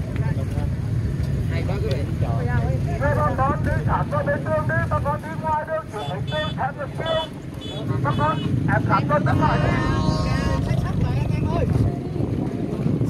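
Voices of people talking in a walking crowd, over a steady low rumble.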